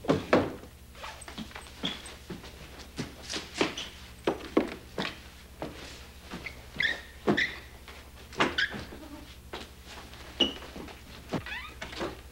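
An irregular string of knocks and thumps with a few short squeaks, about two or three a second, the first near the start the loudest. A steady low electrical hum runs underneath.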